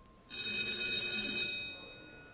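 A single loud bell ring, starting suddenly, sounding for about a second and then fading away.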